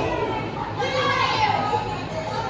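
Children in a ringside crowd shouting and calling out in high-pitched voices, several yells one after another.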